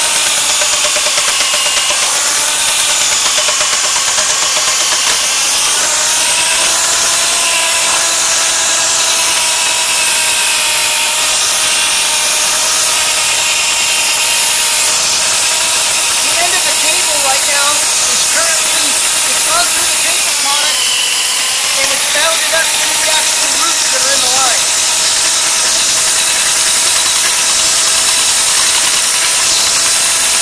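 Motorized drain-snake machine running steadily, a constant motor whine over a hiss, as its spinning cable works through a drain line and breaks up the paper products clogging it.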